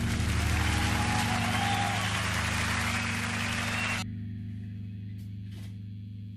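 Acoustic guitar's last chord ringing out and slowly fading, with a steady hiss over it that cuts off suddenly about four seconds in.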